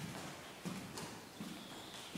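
Footsteps of a person walking across a wooden floor: a few knocking steps in quick succession.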